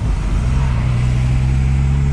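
Turbocharged BMW M52 straight-six in an E30 running steadily while driving, a low engine drone heard from inside the cabin; its tone shifts slightly about half a second in, then holds steady.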